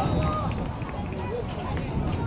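Scattered shouts and voices of young players and spectators on an outdoor football pitch, faint and intermittent, over a steady low rumble.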